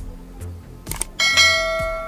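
Subscribe-button animation sound effect: a couple of quick clicks about a second in, then a bright bell ding that rings on and slowly fades. Background music with a light beat plays underneath.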